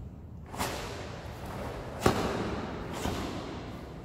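Karate gi snapping with sharp strikes in a kata, three times about a second apart, the loudest about two seconds in, each trailing off in the echo of a large hall.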